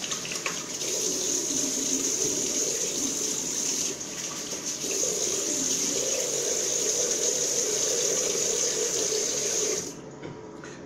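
Bathroom sink tap running steadily while the face is wetted for a wet shave; the flow stops just before the end.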